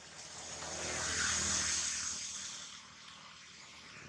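A motor vehicle passing by: its noise swells to a peak about a second and a half in and fades away.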